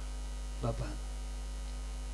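Steady low electrical mains hum in the stage microphone and sound system during a pause in speech, with one short spoken word about half a second in.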